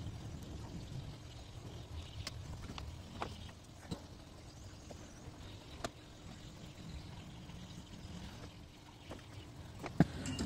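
Faint steady background hum with a few sharp, isolated little clicks and taps from handling a circuit board while a component is pushed into place and its leads are soldered.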